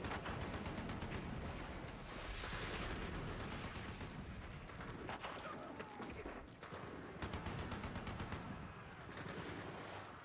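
Rifle and machine-gun fire as a battle sound effect: rapid shots crackling in clusters over a low rumble.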